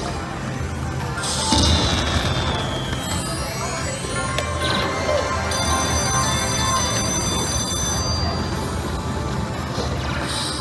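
Slot machine win sounds: celebration music with bell-like ringing as a bonus win is counted up onto the meter, with a loud descending sweep about a second in.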